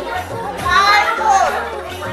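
Music playing in a large hall with several voices talking and calling over it, one voice loudest about halfway through.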